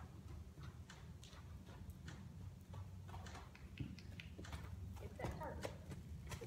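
Mule's hooves on soft arena dirt as she trots on the lunge line: a run of irregular, soft footfalls over a steady low rumble.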